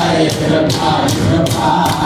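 Hundreds of young men singing a Jewish religious song together in unison, led by one voice on a microphone, with rhythmic hand clapping about three times a second.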